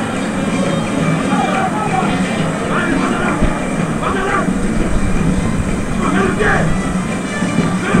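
Steady ambient noise of a live football match broadcast, with faint voices now and then.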